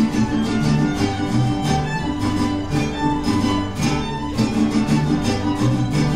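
A mariachi band playing: a violin melody over strummed guitars, with the guitarrón's bass notes moving underneath.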